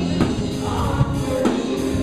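Live church praise band playing a worship song: voices singing over the band, with keyboard, bass guitar and drums.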